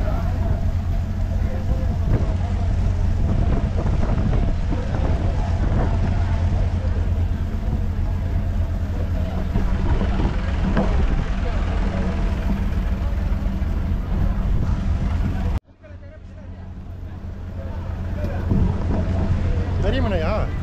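Steady low rumble of a moored fishing boat's engine running, with voices in the background. About three-quarters of the way through, the sound cuts out abruptly and then fades back in.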